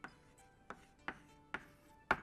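Chalk tapping and scraping on a blackboard as a word is handwritten: a few short, sharp knocks about half a second apart, faint.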